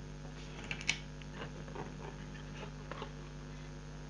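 Faint, scattered clicks and light taps of a laptop's metal heatsink-and-fan assembly and motherboard being handled and set down, over a steady low electrical hum.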